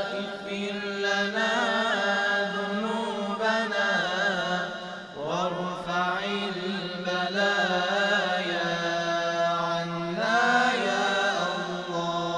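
Chanted vocal music: several voices singing a gliding melody over a steady low drone.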